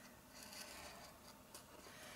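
Faint scratching of a scoring stylus drawn along a groove of a scoring board, pressing a score line into grey cardstock.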